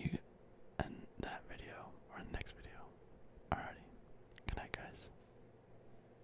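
A man whispering close to the microphone in short phrases, with a few sharp clicks between them, trailing off about five seconds in.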